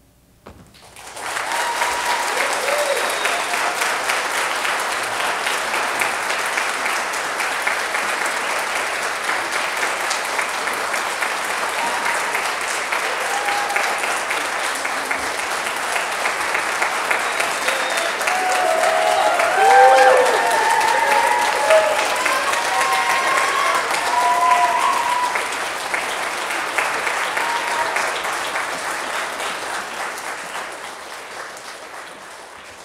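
Audience applause that breaks out suddenly about a second in and keeps up, easing off near the end, with cheering voices calling out over it around the middle.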